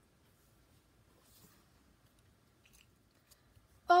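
Near silence: room tone with a few faint, brief rustles and clicks, as of small paper and plastic toys being handled.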